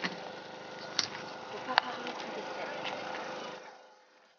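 Outdoor background of indistinct voices and general noise, with two sharp clicks about one and nearly two seconds in; the sound fades out just before the end.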